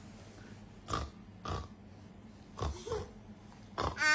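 A person making four short, separate noises about half a second to a second apart, then a toddler starts shouting loudly near the end.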